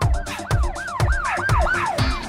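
Electronic dance music with a kick drum twice a second and a swooping, siren-like synth line that rises and falls about four times a second.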